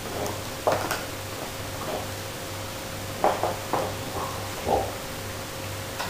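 Knocks and scrapes of a large, solid chew bone against a hard laminate floor as a puppy gnaws at it and pushes it about, coming in short irregular clusters about a second in and again around three to five seconds in.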